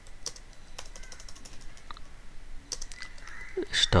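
Computer keyboard typing: a scattered, uneven run of single key clicks as a shell command is typed, backspaced and retyped. A man's voice starts just before the end.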